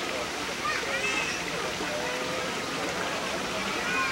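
Steady rushing of flowing water from a natural hot spring, with faint voices in the background.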